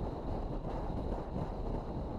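Steady low rumble of road and wind noise from a moving car.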